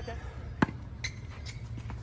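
A tennis racket strikes a ball once, a sharp pop about half a second in. Two fainter, more distant ball knocks follow, the last near the end, over a steady low rumble.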